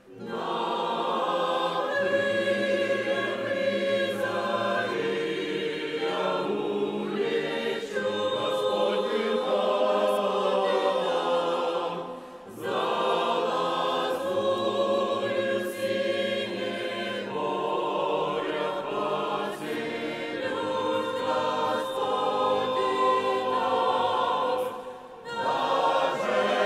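Mixed choir of men's and women's voices singing, with short breaks between phrases about twelve seconds in and again near the end.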